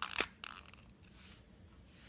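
A few short plastic clicks and scrapes in the first half second as the two halves of a ZOpid HP-ZV180B battery-operated mini desktop vacuum's housing are twisted clockwise to lock together.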